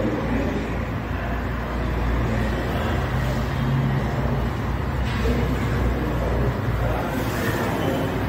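Steady low background rumble with a hum, like road traffic noise, at a constant level.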